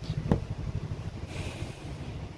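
Folded nighties being handled on a table: a short tap about a third of a second in and a brief rustle of cloth near the middle, over a low steady hum.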